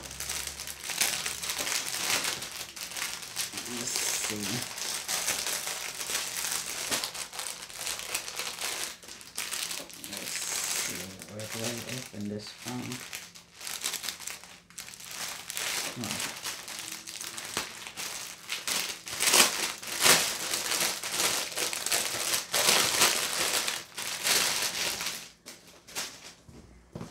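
Packaging crinkling and rustling continuously as it is handled and opened by hand to unwrap a waterproof toilet seat cover, louder about three-quarters of the way through.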